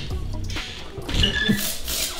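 Background music, with a few faint light knocks.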